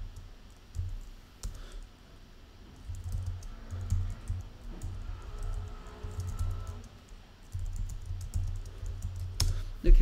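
Typing on a computer keyboard: a run of keystroke clicks with dull thuds, and one louder thump near the end.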